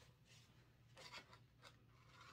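Near silence, with a few faint snips and rustles of a paper template being cut with scissors, the clearest about a second in.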